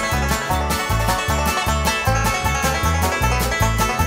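Instrumental intro of a 1970s country song: fast plucked-string notes over a bass line that alternates between two notes at a quick, steady tempo.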